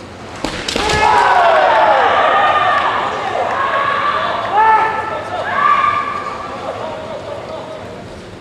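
Kendo exchange: sharp cracks of bamboo shinai and a foot stamp on the wooden floor about half a second in, followed by loud, drawn-out kiai shouts from the fencers, with fresh yells at about four and a half and five and a half seconds that fade toward the end.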